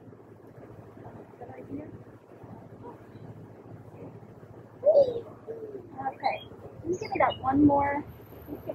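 Brief wordless vocal sounds, short pitched murmurs that glide up and down, about five seconds in and again near the end, mixed with a few high bird chirps.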